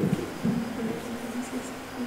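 Faint, indistinct voices of people talking quietly in a small room.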